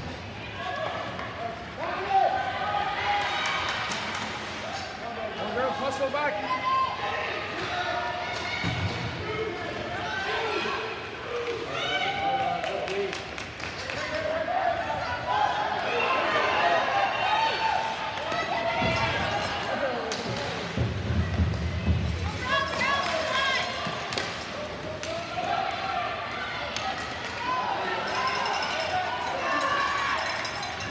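Ice hockey game in an arena: spectators and players shouting and calling out throughout, with sharp clacks of sticks and puck and a couple of heavier thuds, about 9 and 21 seconds in.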